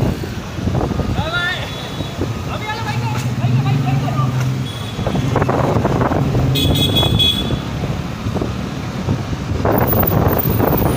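City street traffic with vehicles running past, people's voices, and a vehicle horn honking briefly about seven seconds in.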